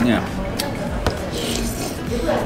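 Metal spoon scraping and clinking against a ceramic soup bowl while scooping up a meatball, with two sharp clinks, then a short slurp from the spoon near the end.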